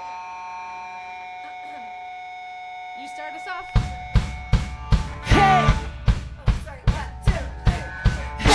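An amplified electric guitar holds a steady ringing tone. About four seconds in, the drum kit and guitar start a punk rock song together, with loud, evenly spaced drum hits at roughly two to three a second.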